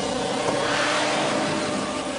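Motor vehicle engine sound effect, a motorcycle speeding out of a hangar: a steady rushing engine noise that swells about a second in, then eases.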